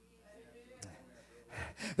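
A short pause in a man's preaching: mostly quiet, with a faint click near the middle and a quick breath drawn in near the end before he speaks again.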